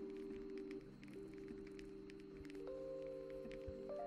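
Soft background music of long held notes that shift from chord to chord, with a new higher note coming in about two-thirds of the way through.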